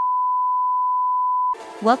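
Steady, single-pitch test-tone beep of the kind played with a 'no signal' TV test card, cutting off suddenly about one and a half seconds in.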